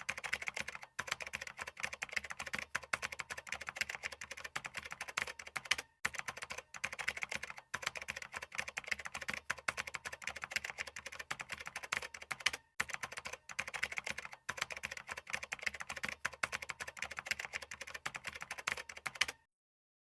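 Typing sound effect: a fast, continuous run of key clicks, broken by a few brief pauses, that stops shortly before the end.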